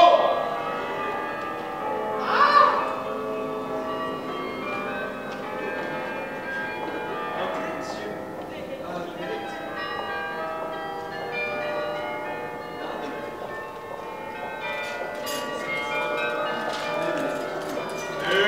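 Church bells ringing, many overlapping tones sounding and fading together, with a brief voice about two and a half seconds in.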